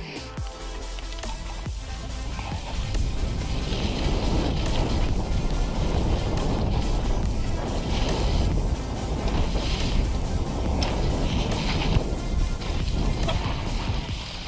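Wind rushing over the microphone and a mountain bike rattling down a muddy, leaf-strewn trail at speed, getting louder over the first few seconds, with music underneath.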